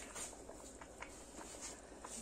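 Thick vegetable sauce (zucchini adjika) bubbling in a large pot, with faint scattered pops and plops as bubbles break through the surface.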